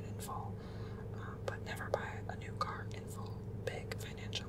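A man whispering close to the microphone, with short mouth clicks, over a steady low hum.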